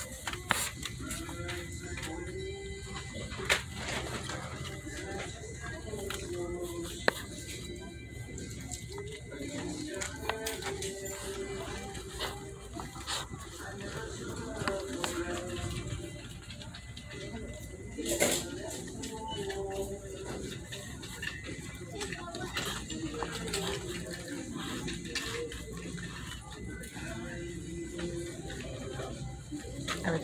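Background music with a singing voice, playing over a store's ceiling speakers, with a few sharp clicks.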